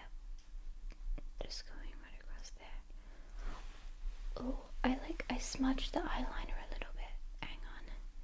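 A woman's soft whispering and murmuring close to the microphone, fullest about halfway through, with a few light clicks scattered around it.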